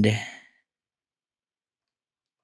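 A man's drawn-out spoken "and" trailing off and fading out in the first half-second, then dead silence.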